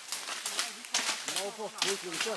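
People pushing on foot through dry forest undergrowth: repeated crackles and snaps of leaves, twigs and brush. Voices talk from about halfway through.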